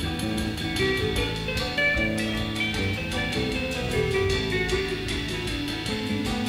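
Rock band playing an instrumental passage: electric guitar lines over bass and a drum kit keeping a steady beat.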